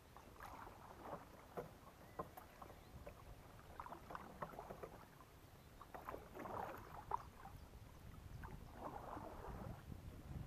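Faint splashing and dripping of a kayak paddle dipping into calm water, a cluster of small splashes every two to three seconds.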